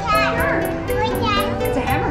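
High children's voices calling out, with no clear words, over steady background music of held notes.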